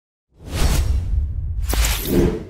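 Logo-intro whoosh sound effect: a rushing swell with a heavy deep bass rumble that comes in about a third of a second in, and a second, brighter whoosh about a second and a half in.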